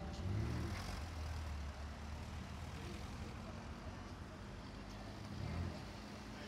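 Sports-car engine and exhaust as an Aston Martin Vantage pulls away, loudest in the first second and a half, then settling into a steady low rumble. Near the end, a brief rev that rises and falls comes from an arriving Jaguar F-Type coupe.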